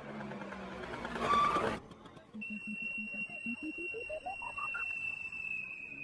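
Film soundtrack effects: a loud rushing noise that cuts off suddenly just under two seconds in, then a steady high whistle-like tone joined by a quick stepped run of short notes rising in pitch.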